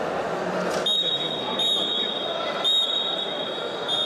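Sports-hall crowd chatter. About a second in, a high, steady signal tone starts and sounds in long blasts with short breaks, as the wrestling action is stopped.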